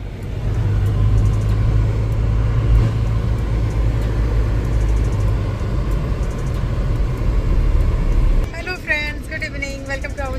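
A car heard from inside the cabin while driving, a steady low rumble of engine and road noise.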